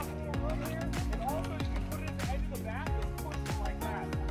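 Background music with a steady drum beat, bass and a singing voice.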